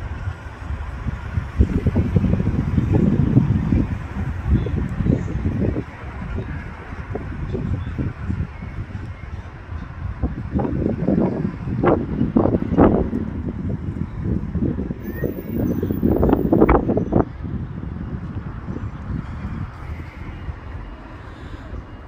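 Wind buffeting a phone's microphone in gusts, a low rumble that swells loudest for a few seconds near the start and again in the middle.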